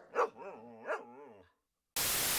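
A dog barking twice, about a second apart, the second bark trailing off into a short falling whine.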